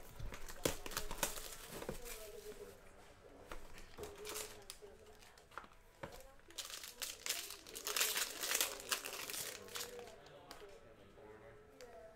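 Plastic shrink wrap crinkling and tearing as it is stripped off a cardboard box of trading cards, in irregular bursts, loudest from about seven to nine seconds in.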